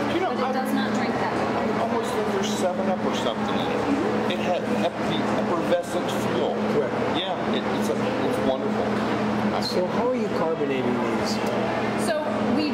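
People in conversation at a table, with voices throughout over a steady low hum.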